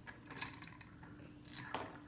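Faint clicks and light knocks of plastic toy parts being handled as a Barbie doll is fitted onto a toy dog stroller's handle, over a steady faint low hum.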